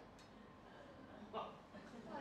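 Near silence with room tone, broken about a second and a half in by one short burst of laughter.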